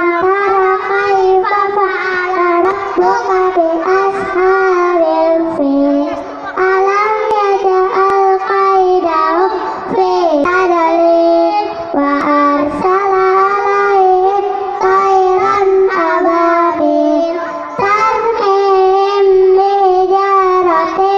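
A group of children singing a song together, amplified through handheld microphones, their voices carrying one melody.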